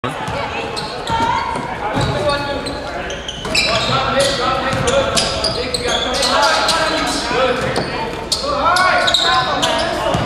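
A basketball being dribbled on a hardwood gym floor: a run of sharp bounces amid indistinct voices of players and spectators, echoing in the gym.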